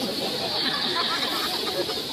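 Indistinct chatter of bystanders' voices over a steady street hiss.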